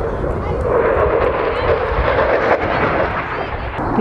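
An aircraft flying past in an air-show display: a loud, steady engine roar that swells up about half a second in and eases off near the end.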